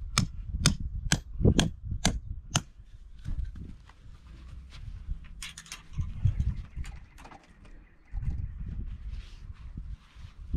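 A mallet strikes a metal awning peg six times, about two blows a second, driving it into the ground. After that come lighter scattered clicks and handling rustle from the tie-down strap, with wind rumbling on the microphone.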